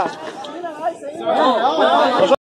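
Voices of several people talking over one another, with no firework bang.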